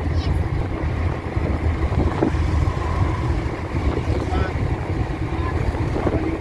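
Steady low road noise inside a moving car's cabin at highway speed: tyre rumble and engine with some wind noise.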